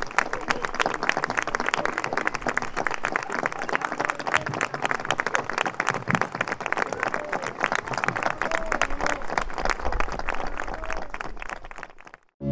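An audience applauding: many people clapping in a dense, steady patter that thins and fades out near the end.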